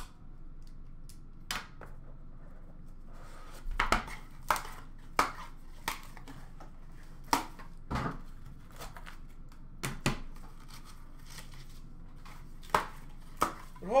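Cardboard trading-card box being opened and its contents handled on a counter: scattered sharp taps and clicks, with a stretch of rustling packaging about four seconds in.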